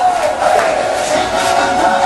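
Pop music playing loudly, with a group of voices chanting along over a wavering sung line.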